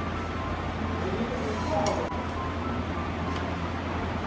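Steady low hum with indistinct background voices in the shop. A few faint clicks, about two seconds in and again near the end, come from chopsticks against the noodle bowl as the rice noodles are stirred and lifted.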